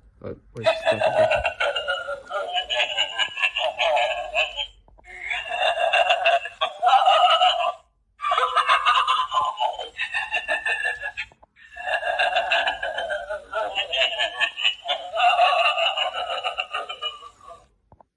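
Pennywise Sidestepper animatronic playing its recorded Pennywise voice audio through its small built-in speaker, thin and without bass, in several stretches broken by short pauses.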